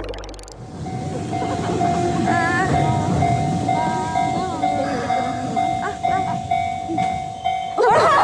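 A Nishitetsu electric commuter train running past across a level crossing, its wheels rumbling, while the crossing warning bell rings about twice a second.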